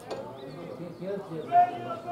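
Voices of players and onlookers shouting and calling across an outdoor football pitch, with one louder call about one and a half seconds in.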